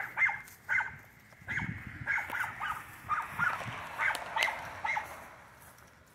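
A dog barking over and over, about two short barks a second, stopping about five seconds in.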